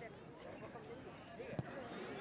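Spectators' voices murmuring at a distance, with one sharp thud of a football being struck about one and a half seconds in.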